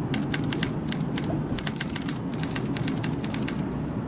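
Typewriter-style sound effect of quick, irregular key clicks, over the steady low road rumble inside a moving car.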